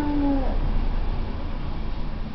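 Baby cooing: one drawn-out coo falling gently in pitch, ending about half a second in, with a low rumble underneath.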